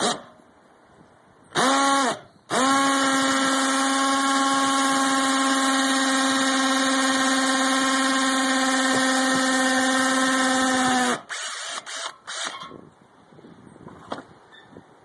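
Power drill boring into brick mortar beside a wall vent hood. It gives a short spin-up about a second and a half in, then one long steady whine of about eight seconds that stops suddenly, followed by a few light knocks.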